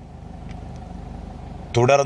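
A low, steady background rumble with a faint regular flutter during a pause in a man's speech. His talk starts again near the end.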